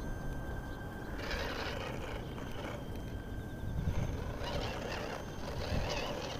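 Electric motor and gearbox of a radio-controlled rock crawler on a Tamiya CR-01 chassis whining in a thin high tone that stops and starts with the throttle, over a steady low wind rumble on the microphone.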